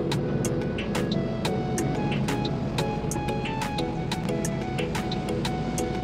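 Background music with a steady beat, over the low steady rumble of a moving shuttle bus.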